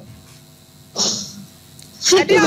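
A single short breathy noise, such as a sniff or sharp breath, about a second in, in a pause between speech.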